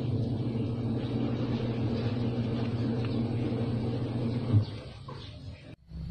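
Steady low motor rumble, which fades away about four and a half seconds in.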